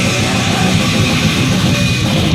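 A heavy metal band playing live: distorted electric guitars, bass and drums, loud and continuous.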